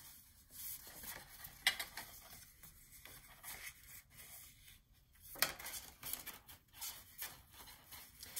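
Hands handling paper and cardstock: folded album pages flipped and pressed down, with soft rustling and a few light taps, two sharper ones a couple of seconds apart.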